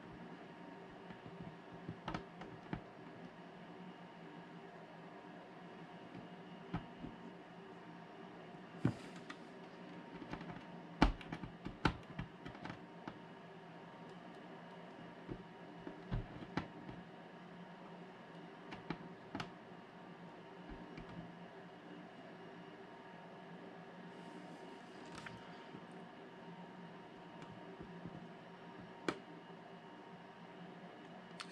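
Quiet room hum with scattered light clicks and taps from the hand-held soldering iron and solder sucker being handled, the sharpest about eleven seconds in. A short hiss comes about nine seconds in and again near twenty-five seconds.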